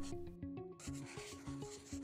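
Soft background music of plucked notes, with a scratchy sketching sound like pencil on paper joining a little under a second in and running on through the rest.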